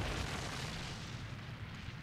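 Anime sound effect of a magic attack blasting against a dragon: an explosion rumble and hiss that slowly fades away.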